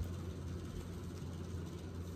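Steady low hum and hiss of a running electric fan, with no distinct events.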